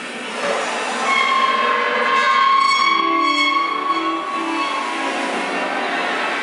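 Free-improvised electro-acoustic ensemble music: several sustained high tones overlap in a dissonant, horn-like chord that swells about a second in and holds, with a few short low notes near the middle.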